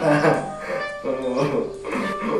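A person laughing and vocalising over background music with held instrumental notes.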